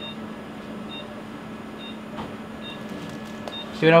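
Short high beeps, about one every 0.9 seconds, from a patient monitor sounding the pulse, over a steady low hum.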